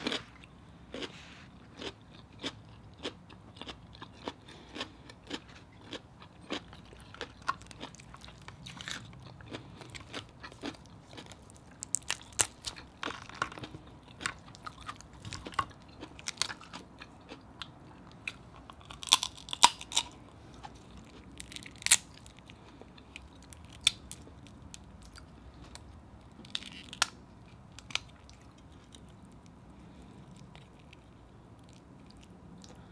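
Close-up wet chewing of seafood, a steady run of small mouth clicks, with several louder cracks and snaps later on as crab and shrimp shells are broken and pulled apart by hand.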